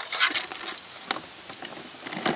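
Steel traps and their chains clinking as they are lowered into a pot of hot water for waxing. A quick run of clinks in the first second, one more clink just after, then quieter.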